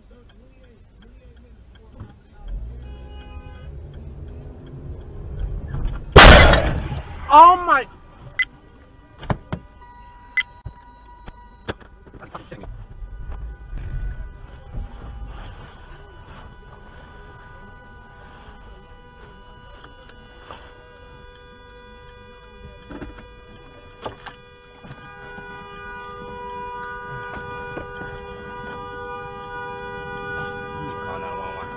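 Car collision recorded from inside the car by a dash cam: a loud crash of impact about six seconds in, a second bang a second later, then scattered knocks. From about eleven seconds on, steady sustained tones that get stronger near the end.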